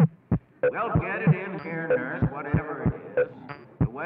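Text-sound collage: a man's recorded voice cut into short, overlapping fragments that stop and restart abruptly, so no words come through. Deep low thumps fall at uneven intervals beneath it.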